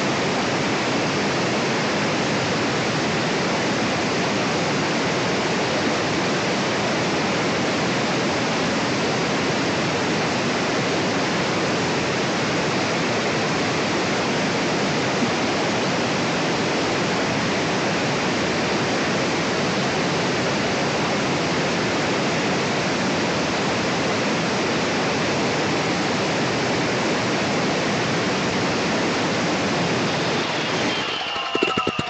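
Large angle grinder with a 9-inch grinding disc cutting through an Accrington brick, slicing it into thin slabs: a steady, unbroken grinding noise.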